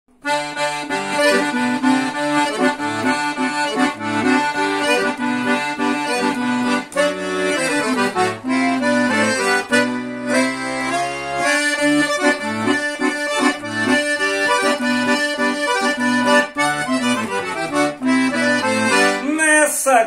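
A piano accordion (Todeschini) plays an upbeat 'batidão' riff, a treble melody over a pumping rhythmic accompaniment. It stops just before the end.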